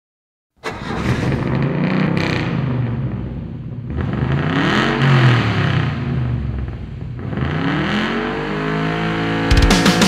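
Engine revving in several sweeps, the pitch rising and falling, over a low rumble. Heavy rock music cuts in near the end.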